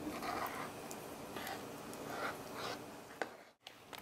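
A knife swirling through brownie batter and cream cheese in a baking pan: a few soft, squishy strokes with light scrapes of the blade, then a single click near the end.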